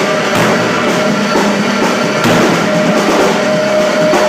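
Live rock band playing loud and dense: drums and crashing cymbals under a distorted guitar holding one steady note.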